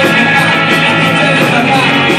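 Rock band playing live: distorted electric guitar, bass guitar and drums with a steady cymbal beat, and a man singing into a microphone over them.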